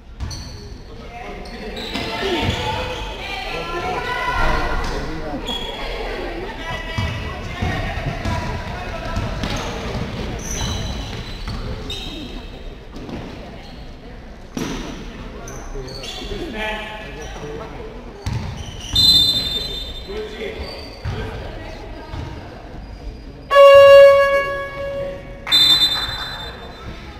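Basketball game in a sports hall: the ball bounces on the court and players call out. A referee's whistle sounds about 19 seconds in. Near the end a loud buzzer sounds for over a second, followed by another short whistle blast.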